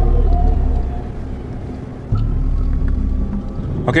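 Deep low rumble that starts abruptly twice, about two seconds apart, under faint sustained tones that slowly fall in pitch: a brooding documentary-score drone.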